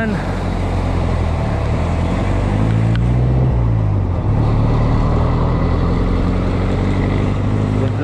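A jeepney's diesel engine running just ahead in traffic, its pitch rising and then falling about three seconds in, over a steady rush of wind and road noise.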